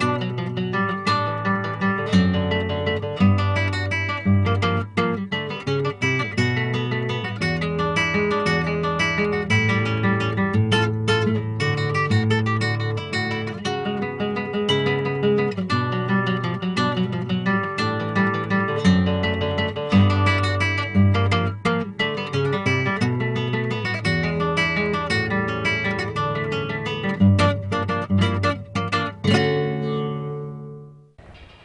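Solo flamenco guitar playing: dense runs of plucked notes broken by frequent sharp strummed strokes, fading out at the very end.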